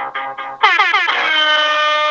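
Music with quick plucked notes, cut off about half a second in by a loud horn-like tone that slides down steeply in pitch and then holds one steady note.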